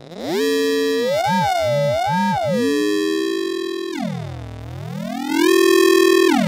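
Synthrotek FOLD Eurorack module's ring modulator combining a sine wave and a square wave: a metallic, bell-like synthesizer tone whose partials slide up and down and cross each other as an oscillator's pitch is moved. About two-thirds of the way through, the whole tone sweeps down low and climbs back up.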